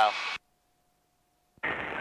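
Headset intercom audio: a man's voice stops early, then the feed falls silent apart from a faint steady tone. Near the end an aircraft radio transmission comes in, narrow and tinny.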